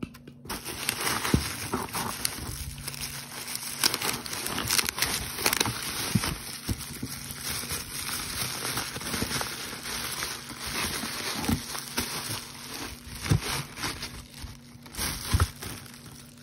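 Plastic bubble wrap crinkling and crackling as hands unwrap a glass bottle from it, a dense run of small crackles and sharp clicks starting about half a second in.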